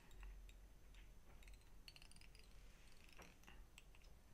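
Near silence with a few faint, light clicks and ticks scattered through it, from a wire whip-finish tool and tying thread being worked to tie off the thread at the head of a fly.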